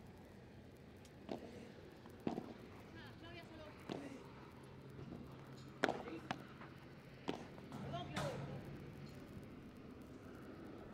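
Padel rally: a ball struck back and forth by rackets, with about seven sharp pops at irregular gaps of a second or so, the loudest a little before the middle.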